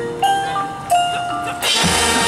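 Marching band's front-ensemble mallet percussion playing a few separate ringing notes, then the full band, brass included, comes in together about a second and a half in and holds a loud, steady chord.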